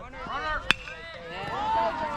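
A metal baseball bat strikes a pitched ball once with a sharp ping about two-thirds of a second in. Spectators and players then break into rising shouts and cheers as the ball is put in play.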